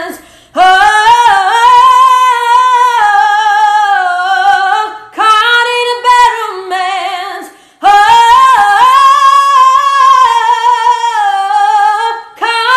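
A woman singing unaccompanied in three long, high phrases with short breaths between them, her pitch wavering through ornamented runs.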